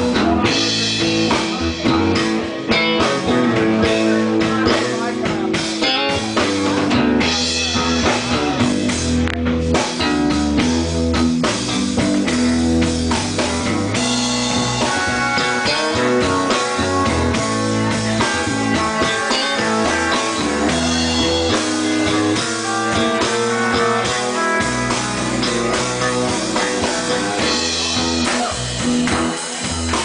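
Live blues band playing, with an electric bass guitar taking a solo over the drum kit.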